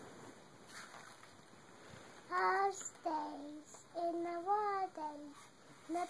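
A small girl's high sing-song voice, holding a few drawn-out notes that step up and down, starting about two seconds in.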